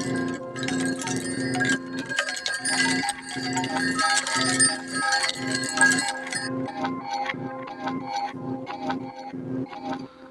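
An electronic music loop playing through a Chase Bliss MOOD granular micro-looper pedal, with steady pitched tones over a pulse of about two beats a second. It thins out in the second half and cuts off near the end as the loop is stopped.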